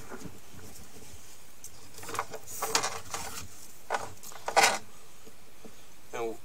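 Sewer inspection camera's push cable being fed into the drain line: a few short, irregular rubbing and scraping noises starting about two seconds in, over a steady hiss.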